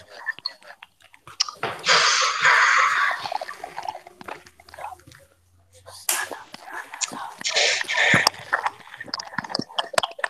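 Noise from a student's unmuted microphone coming through a video call: two long bursts of rustling hiss, about two seconds in and again about seven seconds in, with scattered clicks between them.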